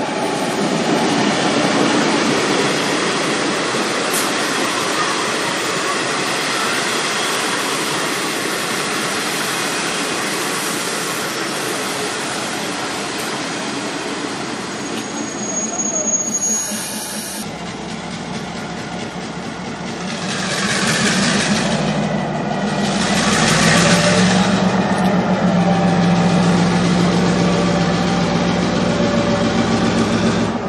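Orange diesel-electric locomotive hauling a train of blue passenger coaches slowly past: engine running with wheels rolling on the rails. In the second half a steady low hum sets in, with two bursts of hiss a few seconds apart.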